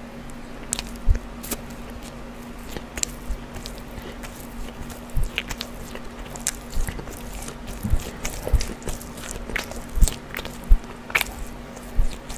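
Close-miked mouth sounds of chewing food: wet clicks and smacks at an irregular pace, with a few sharper snaps, over a faint steady low hum.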